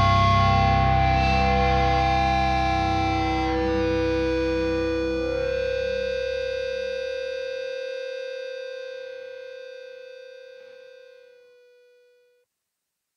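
Distorted electric guitar and bass ringing out on a held final chord at the end of a hardcore punk song. It fades slowly, the low notes dying away first, and one higher tone lingers until it drops out near the end.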